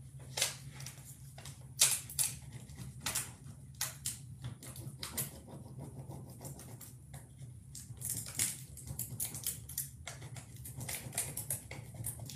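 Plastic backing sheet of a rub-on transfer crinkling and a small stick scratching over it as the transfer is burnished onto a painted plastic egg, in irregular sharp crackles and scratches. A low steady hum runs underneath.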